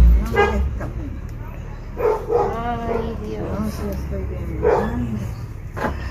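A dog barking and yelping a few times, in short pitched calls, with quiet talking around it.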